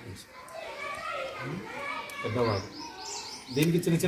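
Quiet background voices chattering, with a run of short, high bird chirps in the second half. A man's voice starts up loudly near the end.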